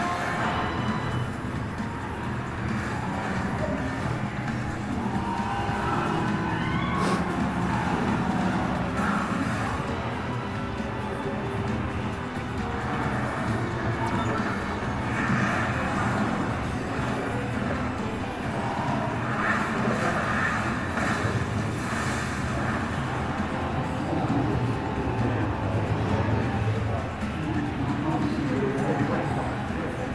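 Film soundtrack of a speedboat chase played through loudspeakers in a hall: music mixed with engine and chase sound effects, steady throughout.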